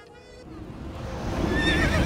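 A deep rumble building steadily in loudness, with a horse whinnying near the end, as a dramatic sound effect.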